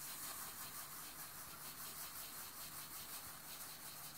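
Granulated sugar trickling through a plastic funnel into a glass bottle: a faint, steady hiss.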